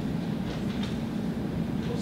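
Steady low hum of the classroom, with a few faint scratches of a marker drawing on a whiteboard.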